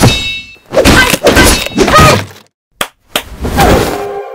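A heavy kitchen cleaver slapped down hard onto a chopping board: a quick series of loud thunks over about two seconds, a short sharp knock, then one more whack near the end.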